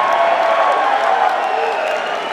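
Large concert crowd cheering and applauding, with individual shouts and yells rising out of the din.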